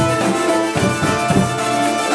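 A live folk ensemble of hurdy-gurdy, nyckelharpa, cittern and percussion playing a tune, with steady held notes over regular drum strikes.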